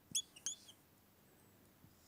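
Dry-erase marker squeaking on a whiteboard as lines are drawn: two short, high squeaks within the first second.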